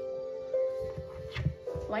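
Background music with long held notes. A few soft low thumps come about a second in, and a voice starts right at the end.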